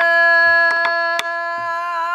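A woman singing pansori, holding one long note steadily that begins to waver into vibrato near the end. A few sharp taps from the buk drumstick on the drum's wooden rim sound in the middle of the held note.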